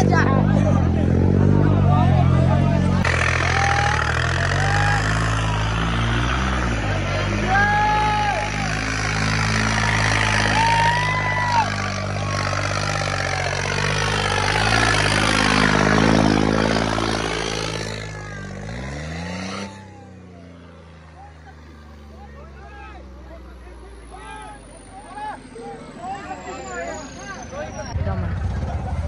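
Farm tractor's diesel engine running hard under heavy load, its rear wheels spinning and digging into loose dirt, with a crowd shouting over it. About two-thirds of the way through the engine winds down and drops away, leaving quieter crowd voices and calls.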